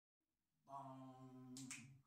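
Start of an a cappella vocal quartet: after a moment of silence, a faint low sung note is held steadily, with a couple of finger snaps near the end.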